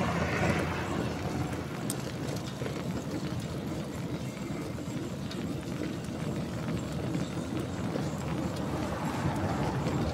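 Wind rushing over a handlebar-mounted camera's microphone, with road-bike tyres rolling on asphalt: a steady rushing noise, a little louder in the first second.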